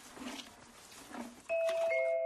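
A bright bell-like chime rings out suddenly about one and a half seconds in and holds a steady tone, with a second note joining just before the end. It is much louder than the faint soft noises before it.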